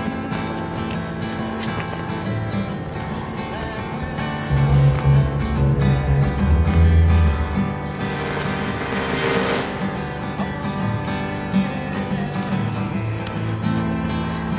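Steel-string acoustic guitar being played, with bass notes ringing out in the middle of the passage. A brief swell of hiss passes about eight seconds in.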